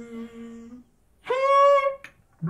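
A solo trumpeter performing experimental music with voice and instrument: a soft, steady hummed tone, a short pause, then a louder, brighter held note more than an octave higher, lasting about half a second, near the end.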